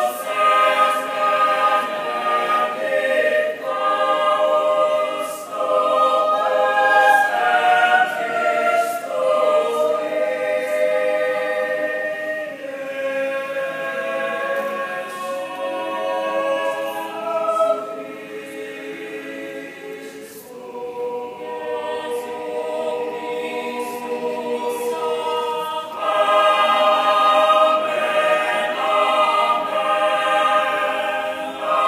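Mixed choir of men and women singing a cappella in sustained, shifting chords. The singing drops to a softer passage about two-thirds of the way through, then swells back to full voice near the end.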